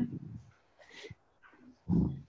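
A dog whimpering in a few short sounds, the loudest right at the start and again near the end.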